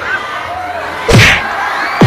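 A single loud slam about halfway through, followed by a deep falling boom, over faint voices.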